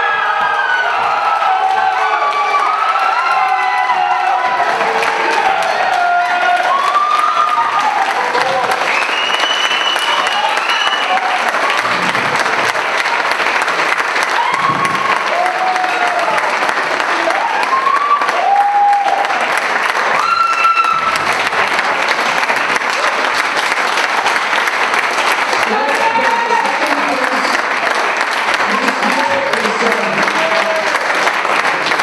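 Audience applauding and cheering steadily, with shouts and whoops rising over the clapping, most of them in the first twenty seconds.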